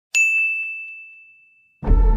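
A single high, bell-like ding, struck sharply and ringing down over about a second and a half; dark, organ-like music starts near the end.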